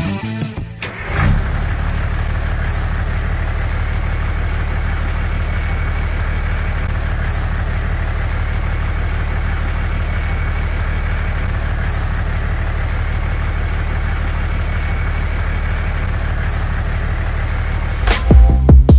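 An engine idling steadily, a deep, even hum that comes in about a second in as music stops.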